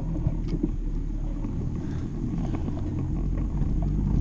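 Steady low rumble of wind buffeting the microphone of a camera moving along a paved path.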